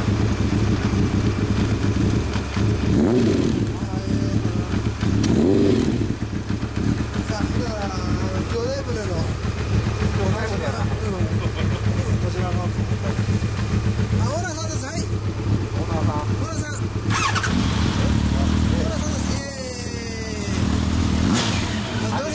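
Inline-four motorcycle engine idling steadily, freshly started, with two short revs a few seconds in. People talk over it in the second half.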